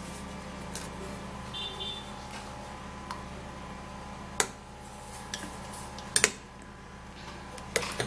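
A few sharp clicks of an eggshell and metal spoon against a small glass bowl as egg white is separated, in the second half, over a steady low hum.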